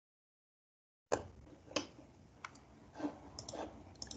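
Computer mouse clicking a few times as sharp separate clicks, with softer knocks and rustle near the end. The sound comes through a video-call microphone that gates down to dead silence when nothing sounds.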